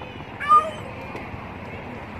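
A macaque gives one short, high-pitched squeal, rising in pitch, about half a second in, over a steady hiss of background noise.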